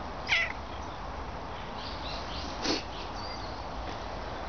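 Domestic cat meowing: a short, sharp call falling in pitch just after the start, the loudest sound here, and a second brief sound a little before the end.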